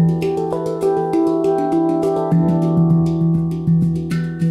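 Ayasa handpan in E Amara played by hand: a quick run of finger strikes on the tone fields, several a second, the steel notes ringing on and overlapping. Under them the low central ding sounds, struck again a little past halfway.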